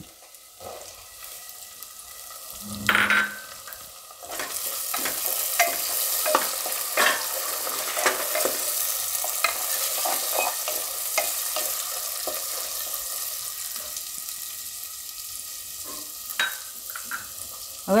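Chopped onion frying in hot oil in a pressure cooker. After a brief knock about three seconds in, the oil sizzles loudly from about four seconds on, with the irregular scrape and tap of a spatula stirring the onion against the pot.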